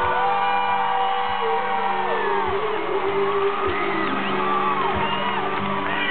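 Live solo acoustic guitar and voice: a long sung note holds steady, then falls away about two seconds in, over the strummed acoustic guitar, with whoops from the concert crowd.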